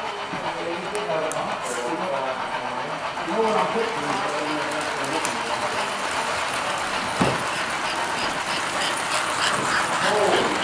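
American Flyer S-gauge model trains running on the track: a steady rumble of locomotive motors and wheels on the rails, with a single sharp click about seven seconds in.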